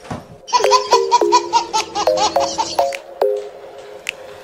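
Rapid high-pitched giggling laughter, about five short laughs a second for nearly three seconds over a steady lower tone, then stopping.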